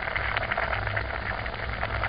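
Calamansi juice and sugar simmering in a pot: a steady fizzing crackle of many small bubbles popping, over a low steady hum.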